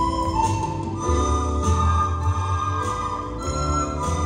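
A group of children playing a Christmas melody together on plastic soprano recorders, holding notes and stepping from note to note about once a second, over an accompaniment with a low bass line.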